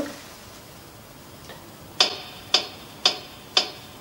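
Metronome click setting the tempo. Four crisp, evenly spaced clicks, about two per second, start halfway through after a quiet stretch.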